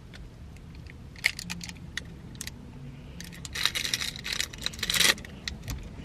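Protein-bar wrapper crinkling and rustling in the hand: a few scattered crackles, then a dense run of crinkling from about three and a half to five seconds in.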